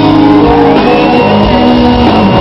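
Rock band playing live at full volume in a concert hall, with a shout over the music. A high held note slides up and holds from a little under a second in.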